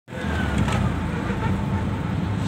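A motor vehicle's engine runs steadily as it drives, heard from on board with a dense, even low hum.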